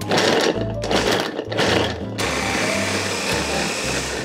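Electric hand blender with a chopper bowl chopping peeled garlic cloves: three short pulses, then a steady run of about two seconds as the garlic is cut to a fine mince.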